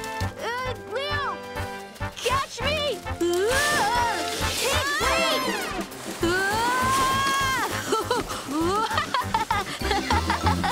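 A cartoon tiger cub's wordless excited yells and shrieks, many short cries rising and falling in pitch, over lively background music.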